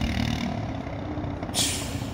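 City street traffic: a low, steady rumble of vehicle engines, with one short hiss about one and a half seconds in.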